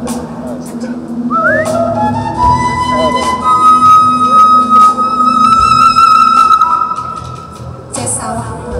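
A bamboo suling flute plays a solo line: a quick upward slide, then a long held high note with a slight waver. Underneath it the band holds a steady low sustained note.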